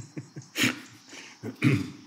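A man's short laugh fading out, then two coughs about a second apart.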